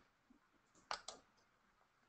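Near silence broken by two faint computer-key clicks close together about a second in.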